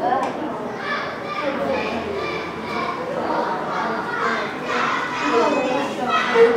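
Many children's voices chattering over one another in a classroom: a steady hubbub of small-group discussion with no single voice standing out.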